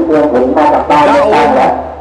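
Festival public-address horn loudspeakers blaring an amplified voice over music, insanely loud.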